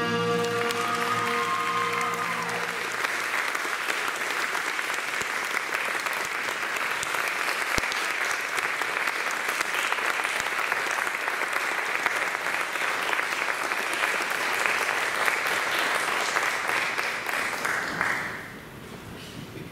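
Audience applauding steadily, the clapping starting over the last held chord of the music, which dies away within the first few seconds. The applause stops near the end.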